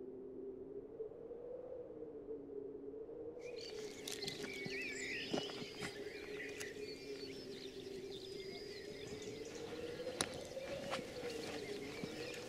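Birds singing from about three seconds in: varied chirps and trills over a low, steady, wavering hum, with a couple of sharp clicks.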